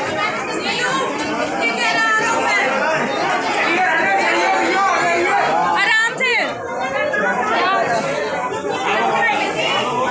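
Crowd chatter: many voices talking at once, none clear, with one nearby voice standing out about six seconds in.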